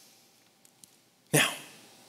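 A short pause of near quiet, then a single sharp cough about a second and a half in.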